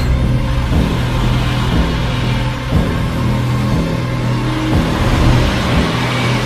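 Dark trailer score: low sustained droning music with a rumbling undertone, its low notes shifting about every two seconds.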